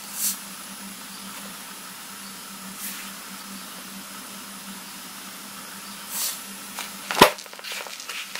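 Close handling noise of a phone held over a bathroom scale: a few soft rustles over a steady low hum, with one sharp knock about seven seconds in.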